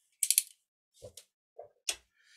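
Utility knife's blade slider ratcheting: a quick run of clicks, then a few single clicks and taps, with one sharp click near the end.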